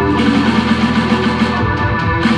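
A live rock band playing: electric guitar with drums and keyboard, the notes held and sustained.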